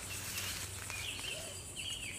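Quiet woodland background: a steady high insect drone with a few short bird chirps in the second half.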